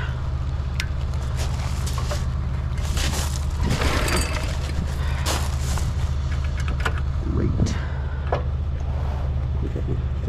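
Small single-cylinder engine of a gas minibike running steadily at an unchanging speed, with scattered light clicks and rattles.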